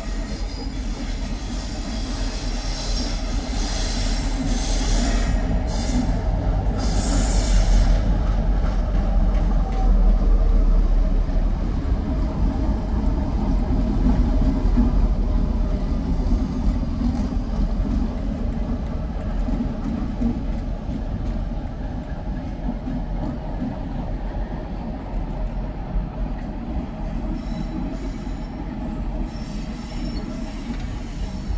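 A Colas Rail Freight Class 60 diesel locomotive passing: a deep engine rumble grows louder as it comes close, peaks about ten seconds in, then slowly fades as it moves away. High-pitched wheel squeal rings out over the first eight seconds or so.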